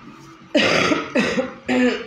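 A woman coughing three times in quick succession, each cough short and abrupt, behind a hand held to her mouth.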